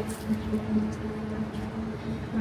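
A steady low hum with one unchanging pitch, over a background of busy market noise.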